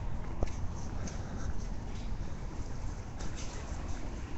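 Steady low rumbling background noise with faint, indistinct voices and a few short clicks.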